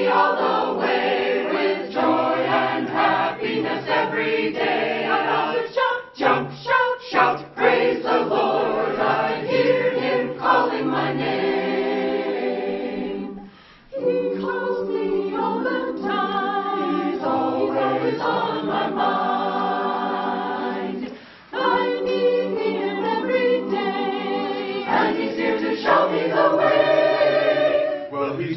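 Mixed choir of men's and women's voices singing a gospel-style church anthem in harmony. The singing drops out briefly about halfway through and again about three-quarters of the way through.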